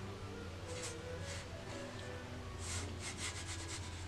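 Fine paintbrush stroking over textured Saunders Waterford watercolour paper, laying in ink and water: a couple of short brushy swishes, then a quick run of them near the end.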